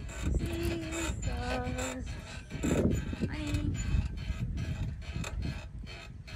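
Single-seat playground seesaw rocker creaking and knocking at its pivot as a child rocks on it, with several short squeaks.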